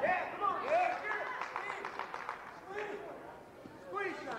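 Men's voices calling out and shouting, the words unclear, with a room of people around.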